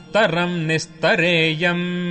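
A man chanting Sanskrit devotional verses in a steady recitation melody: a short phrase, then a longer one whose last syllable is held as one long note near the end.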